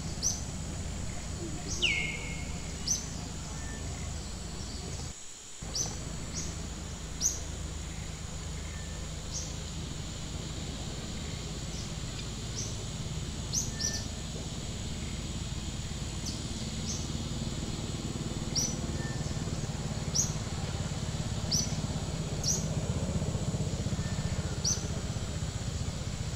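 A bird calls again and again with short, high, upward-flicking chirps every second or two, and one longer falling call early on. Underneath runs a steady low outdoor rumble and a thin, steady high-pitched whine. All of it cuts out for a moment about five seconds in.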